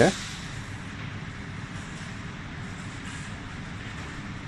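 Steady machine hum with an even hiss from laser stud-welding equipment running, with no distinct pops or strikes standing out.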